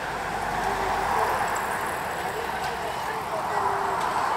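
Steady outdoor street ambience of road traffic, with snatches of passers-by talking.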